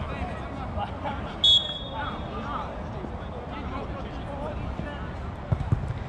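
Open-air ambience of a small-sided football match, with distant players calling. A short shrill whistle blast comes about a second and a half in, and a couple of dull ball kicks come near the end.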